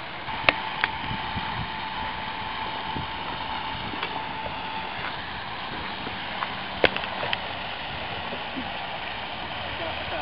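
Steady outdoor hiss with a faint steady high hum through the first half, and a few sharp clicks and knocks, two of them about seven seconds in as the stalled RC airboat is taken by hand at the water's edge.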